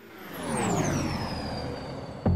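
Synthesized whoosh transition effect: a swelling sweep whose pitch glides down and settles into a high steady tone.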